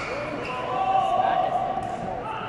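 Court shoes squeaking on the hall's sports floor, with one long squeal lasting about a second near the middle.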